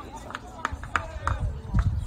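Indistinct distant voices calling out across a ballfield, over a steady low rumble, with a few faint clicks.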